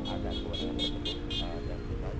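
Street traffic: a car driving past with a vehicle horn sounding, a held tone that starts at once and changes pitch about half a second in. Background music runs underneath.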